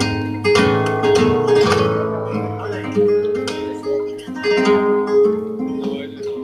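Flamenco acoustic guitar playing solo: picked notes over a held note, broken by sharp strummed chords about once a second.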